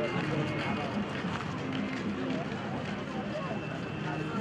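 Crowd ambience: many people talking at once, with no one voice standing out.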